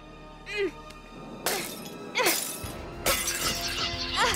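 Cartoon sound effect of a spaceship's glass cockpit canopy shattering: sudden crashing bursts about a second and a half in and again near three seconds, each trailing off, over background music. A brief voiced sound comes about half a second in.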